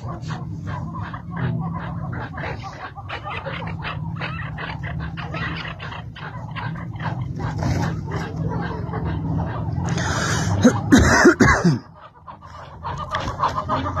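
Chukar partridges calling, a continuous run of short, rapid clucking notes. About ten seconds in the calling grows louder and harsher for a second or so, then breaks off briefly before starting again near the end.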